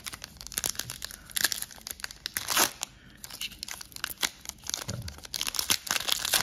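Foil wrapper of a Panini Absolute Football trading-card pack being crinkled and torn open by hand. It crackles throughout, with sharp louder tears about a second and a half in, about two and a half seconds in, and again near the end.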